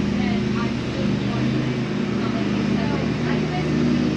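Lawn mower engine running steadily, a low even drone.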